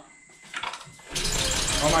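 A 2006 Honda Accord's engine being cranked over without starting, a loud fast rhythmic churning that begins about a second in. Exhaust gases are blowing out of the open radiator as it cranks, the sign of a blown head gasket.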